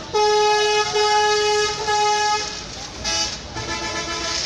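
A horn honking in one long, steady, single-pitched blast of about two and a half seconds, with two very brief breaks, followed by two short, lower honks near the end. Market chatter is underneath.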